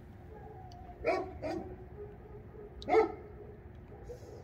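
Neighbourhood dogs barking to one another: two barks close together about a second in, then one more about three seconds in.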